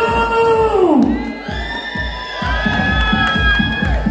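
Dance music played loud over a club sound system: a steady beat about twice a second under long held notes, the melody shifting about a second in, with a crowd cheering.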